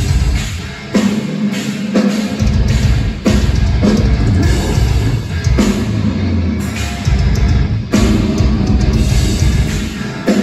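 A heavy metal band playing live through a club PA: distorted guitars, bass and drum kit in a stop-start riff, the full band cutting out and crashing back in several times.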